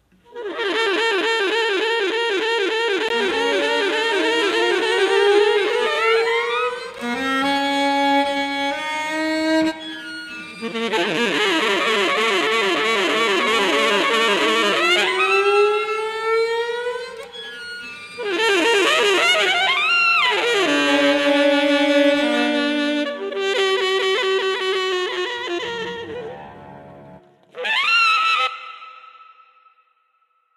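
Pre-recorded cello playing together with a saxophone line improvised by the Dicy2 machine-learning plugin from sax recordings. The two lines hold long notes with vibrato and slides, sometimes landing on the same note in unison, and stop shortly before the end after a final short phrase.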